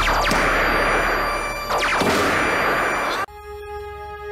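Electronic science-fiction sound effect: a loud hissing noise with two falling sweeps through it, which cuts off abruptly after about three seconds and leaves a steady electronic drone of held tones.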